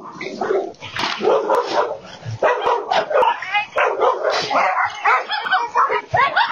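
Several dogs barking and yipping over one another, many calls a second without a break, alarm barking at a bear attacking them from a backyard wall. Heard through a home surveillance camera's microphone.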